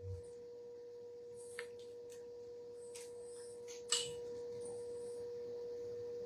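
A steady, pure mid-pitched tone that holds unchanged, with a few faint clicks and a short knock about four seconds in.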